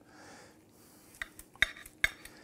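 Steak knife and fork clinking against a ceramic plate while cutting into a grilled ribeye: about four short clinks in the second half, the loudest about a second and a half in.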